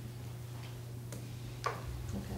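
Meeting-room background: a steady low hum with a few faint clicks or taps, and one short sharper sound with a falling pitch near the end.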